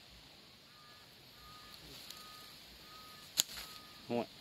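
Quiet open forest with a faint bird call, a short two-pitched note repeated about every three-quarters of a second. About three and a half seconds in comes a single sharp click.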